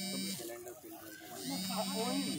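A steady, low buzzing tone that stops and restarts in spells of about a second, each start swinging up briefly in pitch, with people talking over it.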